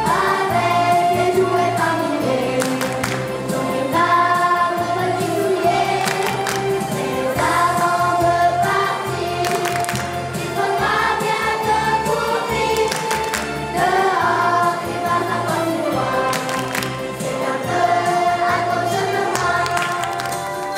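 Children's choir singing together, with an instrumental accompaniment carrying low, steady bass notes underneath.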